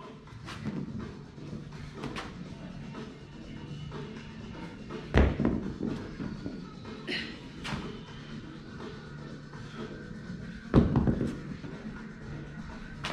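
Background music with a steady beat, broken twice by heavy thuds of dumbbells striking a rubber gym floor during dumbbell devil presses, about five seconds in and again near the end, with lighter knocks in between.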